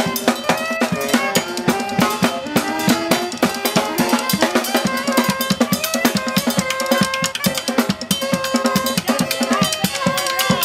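Live jazz from a drum kit and saxophones: busy snare, bass drum and cymbal hits under saxophones holding long notes.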